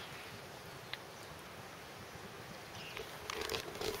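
Faint steady outdoor background hiss with no clear single source, a single short click about a second in, and camera-handling rustle near the end as the camera is swung around.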